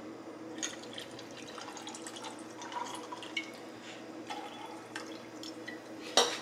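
Drink poured from an aluminium can into a glass, a faint trickle with drips and a few light clicks.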